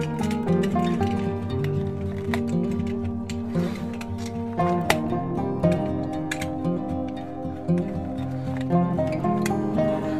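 Background music with plucked guitar notes.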